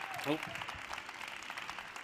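Audience applause, slowly dying down.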